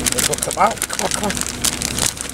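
Beaten eggs sizzling and crackling in an oiled frying pan as grated cheese is shaken out of a plastic bag onto the omelette, with many quick irregular crackles.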